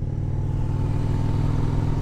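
A 2001 Harley-Davidson Heritage Softail's Twin Cam 88B V-twin running steadily while riding along at an even speed, with no change in revs.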